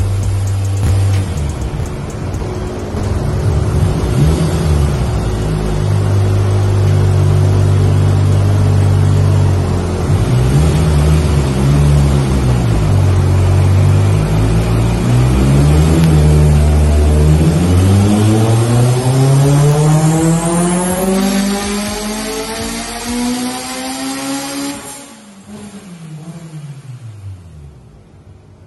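Mitsubishi Evo IV's turbocharged 2.0-litre four-cylinder (4G63) running on a hub dyno: a steady, wavering engine note, then a full-throttle pull in which the pitch climbs smoothly for about seven seconds. Near the end the throttle is shut and the revs fall away.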